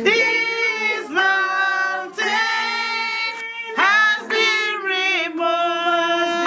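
High voices singing together in long held notes that slide between pitches, with a few sharp claps between phrases.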